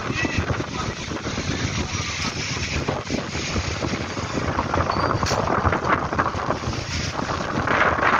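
Strong, gusty wind of a sand storm blowing across the microphone, a steady rush that grows louder in the second half.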